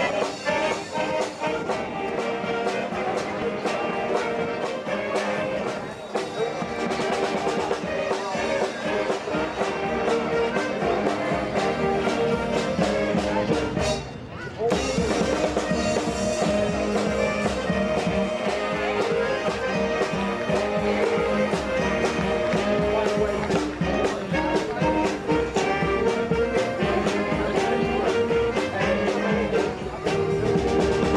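A Mummers string band playing live, saxophones, banjos and accordions together in a marching tune. The music breaks off briefly about halfway through, then starts again.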